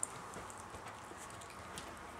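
A few faint scattered clicks and soft rustles from small dogs moving about and chewing.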